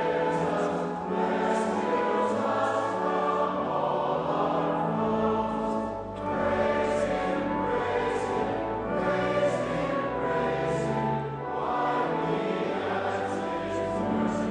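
Congregation singing a hymn together, the sung lines broken by short pauses about every five seconds.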